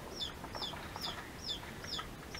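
A bird chirping over and over: short high notes, each sliding down in pitch, about four a second.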